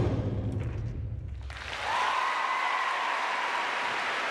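The routine's orchestral music ends on a final accented hit whose low tail dies away over about a second and a half, then the audience breaks into steady applause. About two seconds in, one long high-pitched cheer rises above the clapping.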